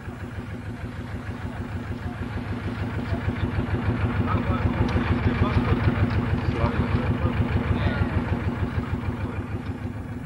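A boat engine running with a rapid, even throb. It grows louder through the first half and eases off toward the end.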